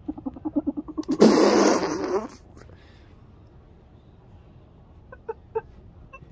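Child stifling a laugh with his lips pressed shut: about a second of quick sputtering pulses, then a loud rush of breath lasting about a second. A few short, faint snickers come near the end.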